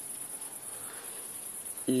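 Crickets chirping: a steady, high, evenly pulsing trill.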